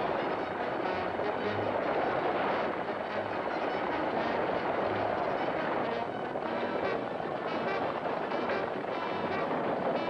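A team of horses galloping and a stagecoach rattling along at speed, a dense steady rush of hoofbeats and wheels, with orchestral film music underneath.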